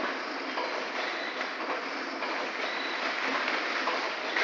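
AP-1000L multi-track vertical form-fill-seal liquor pouch packing machine running, a steady noise of moving parts with faint repeated clicks.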